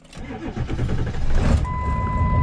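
Ford F-350's 7.3-litre Power Stroke V8 turbodiesel cranking and catching within about a second on a cold start, after the glow plugs have preheated, with weak batteries helped by a jump from a small car; it then keeps running. A steady electronic beep starts about one and a half seconds in.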